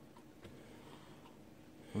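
Faint handling sounds of milkshake being poured from a plastic bottle into a glass, with a soft tap about half a second in.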